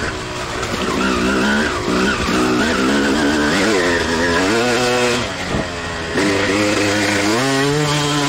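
Suzuki RM250 two-stroke single-cylinder dirt bike engine heard from on board while riding, its note rising and falling with the throttle several times. It eases off briefly about five seconds in, then revs up hard near the end.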